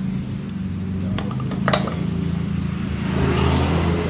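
Metal clinks and scrapes as a motorcycle rear drum-brake backing plate is handled and set into the wheel's brake drum, with one sharp clink a little before halfway. A steady low mechanical hum runs underneath.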